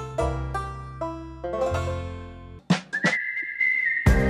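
Background music: a plucked-string tune with a bass line that fades out about two and a half seconds in. A few sharp clicks follow, then one held, slightly rising whistled note as the music changes over.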